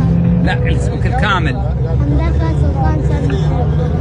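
Close voices of a man and a boy talking over a steady low background rumble.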